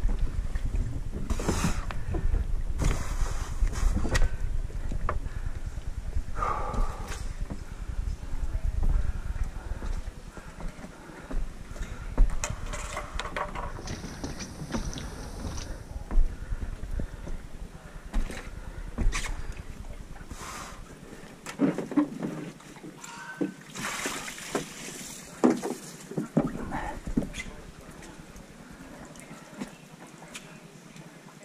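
Scattered knocks and bumps of a paddle and a racing kayak being handled on a modular plastic floating dock. Wind rumbles on the microphone for roughly the first ten seconds.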